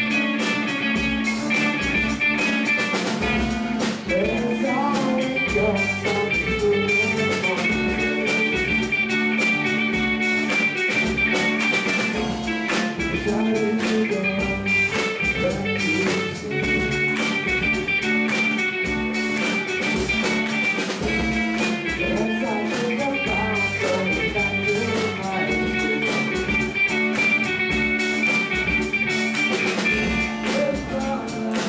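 Live rock band playing: electric guitars over a drum kit keeping a steady beat, with a guitar line sliding in pitch a few seconds in and again later.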